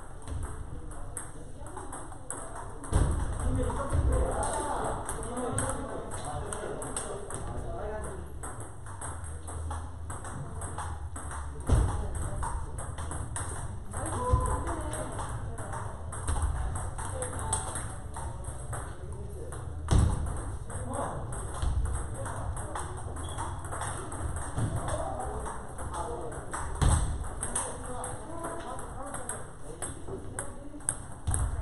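Table tennis balls clicking off bats and tables in fast, continuous rallies from several tables at once, with people's voices in the hall and a few louder low thumps.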